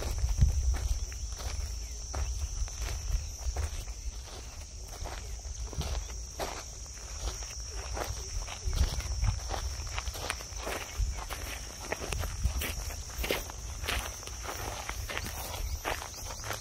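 Footsteps of a person walking at an unhurried pace, with a steady high drone of insects behind.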